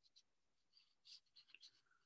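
Near silence: room tone, with a few faint short ticks a little past halfway.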